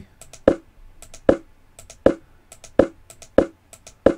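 Computer mouse clicked over and over to step through chess moves: a string of sharp clicks about every three quarters of a second, slightly uneven in spacing, with fainter light clicks between them.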